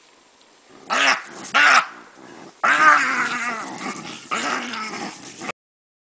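Loud animal cries from a baboon scuffle over a bushbuck calf: two short cries, then a longer run of overlapping calls. The sound cuts off suddenly about five and a half seconds in.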